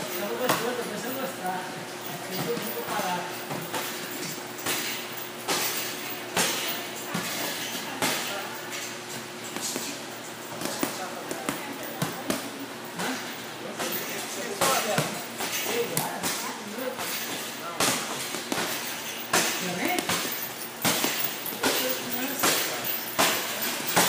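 Kicks and punches landing on handheld Thai kick pads and focus mitts: irregular sharp slaps and thuds, some in quick clusters, with voices in the background.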